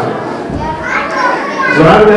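Children's voices chattering.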